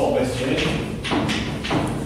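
Chalk writing on a blackboard: a few quick strokes and taps of the chalk, about four in two seconds, with the echo of a large hall.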